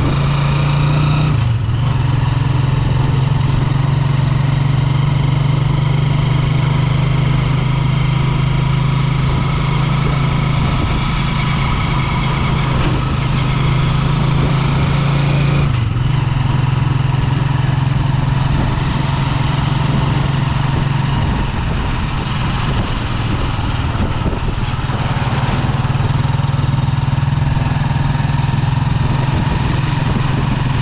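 Vehicle engine running steadily at a constant low hum while driving, with road noise, easing briefly about one and a half seconds in and again about halfway through.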